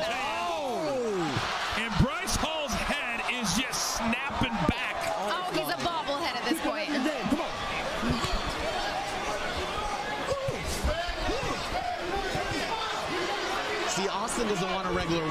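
Boxing arena crowd shouting and whooping, with repeated sharp thuds from the ring as the boxers trade punches and clinch; the loudest thud comes about two seconds in.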